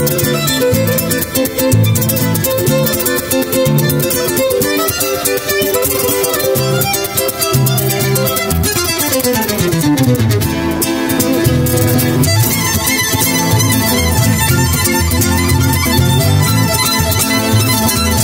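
Violin and flamenco guitar duo playing an up-tempo instrumental, the violin carrying the melody over rhythmic guitar chords. About halfway through, a long falling run sweeps down in pitch before the chords come back in.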